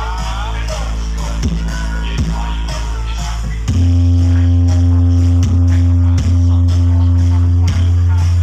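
Loud dance music played through a truck-mounted stack of large loudspeakers: a continuous deep bass drone with falling bass kicks every second or so. About four seconds in, the bass steps up in pitch and gets clearly louder.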